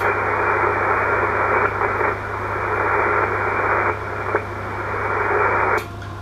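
Icom IC-7200 transceiver's receiver hiss from its speaker on 20-metre SSB, a steady static squeezed into the narrow voice band of the SSB filter. It cuts in abruptly as the transmitter is unkeyed after a QRZ call and cuts off abruptly just before the end as it is keyed again.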